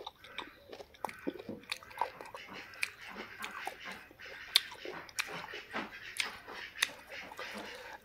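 Close-miked chewing while eating by hand: soft, irregular wet mouth clicks and smacks, fairly quiet.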